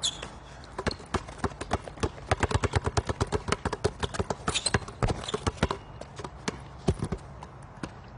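Two basketballs dribbled on hard outdoor paving: a quick, uneven run of sharp bounces, densest in the middle and thinning out near the end.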